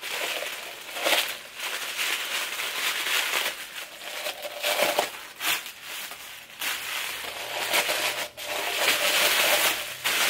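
Paper wrapping crinkling and rustling in irregular bursts as it is pulled off and crumpled away from a newly unboxed wine glass.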